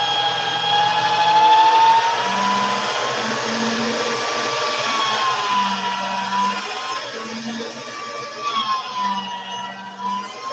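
Small electric mixing appliance running with a steady motor whine that wavers slightly in pitch, blending translucent polymer clay into another clay.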